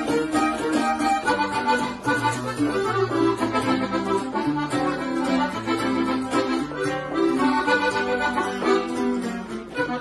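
Red button accordion playing a lively conjunto melody, backed by a bajo sexto strumming chords and walking bass notes. The music runs on steadily.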